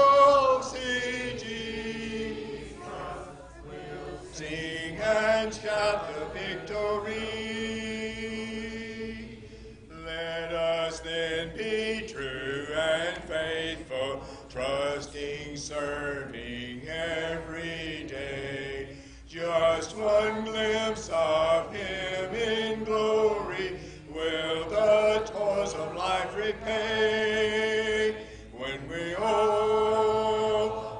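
A church congregation singing a hymn a cappella, in many voices, without instruments. The lines are held in phrases of a few seconds with short breaks between them.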